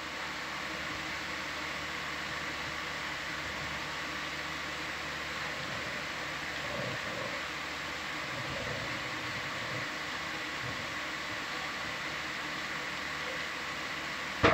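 Steady machine hum and hiss with faint constant tones, an even equipment background that does not change.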